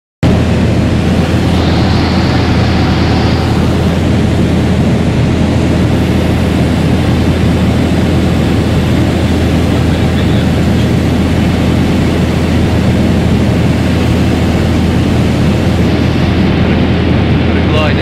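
Steady drone of a light aircraft's piston engine and propeller, heard inside the cockpit of a Scottish Aviation Bulldog trainer in level flight.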